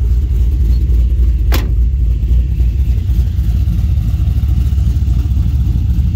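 A twin-turbo LS3 V8 idling steadily with a deep exhaust rumble. A single sharp click sounds about a second and a half in.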